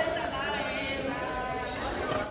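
Badminton hall: unintelligible chatter of several voices, with knocks of rackets hitting shuttlecocks and feet on the court.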